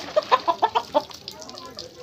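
Chicken clucking: a quick run of about six short clucks in the first second, then quieter.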